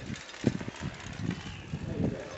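A large bicycle rolling past over rough concrete, rattling with irregular light knocks; the strongest knock comes about half a second in.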